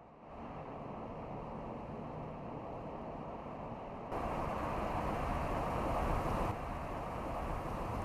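Road and wind noise from an all-electric Mercedes CLA driving at speed: a steady rush of tyres on asphalt with no engine note. It steps up louder about four seconds in.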